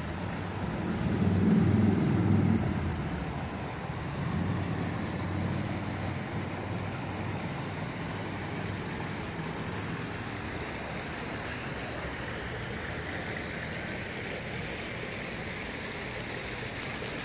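A motor vehicle passing close by, swelling to its loudest about two seconds in and fading away. After that a steady outdoor hiss remains, with water trickling from a concrete culvert.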